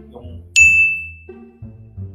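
A single bright "ding" sound effect about half a second in, ringing out and fading over about a second. It sits over soft background music and marks an on-screen caption popping up.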